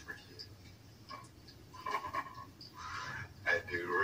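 Indistinct voice from a phone speaker playing back a short dialogue sound clip. It is faint and broken up at first and louder near the end.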